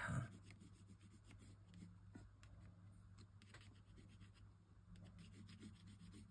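Faint, scattered scratching of a pencil being worked on card, light shading strokes over a low steady room hum.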